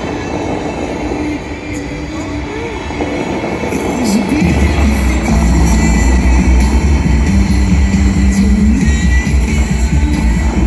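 Show music played over outdoor loudspeakers for the Bellagio fountain display, swelling with heavy bass about four and a half seconds in, over the rush of the spraying water jets.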